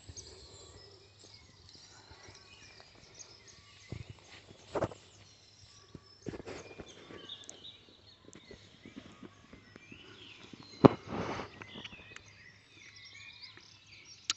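Quiet garden ambience with faint, distant birdsong and a few soft thuds from footsteps or handling; the thud a little before the end is the loudest.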